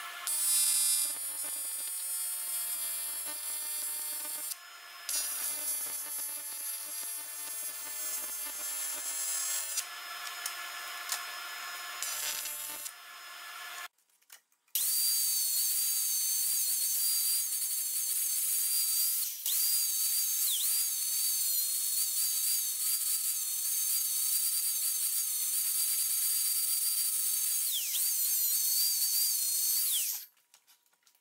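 A small power tool runs in spells for the first half. After a short break a yellow electric angle grinder fitted with a sanding disc runs with a steady high whine as it smooths the aluminum weld; its pitch dips briefly a few times when it is pressed into the work.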